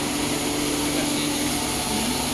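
Steady machine hum and whir of enclosed test-bench equipment running, with a constant low tone under an even hiss.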